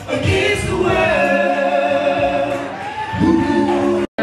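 Several voices singing together into handheld microphones over music, holding long notes, a long higher note through the middle and a lower one near the end.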